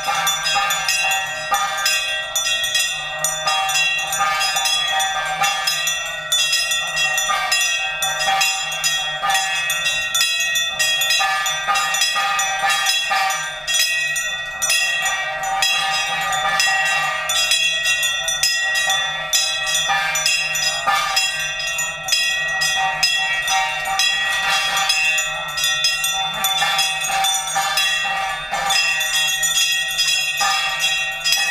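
Brass hand bells ringing continuously with rapid metal strikes of a hand-held gong, as played during the aarti of a Hindu fire ritual.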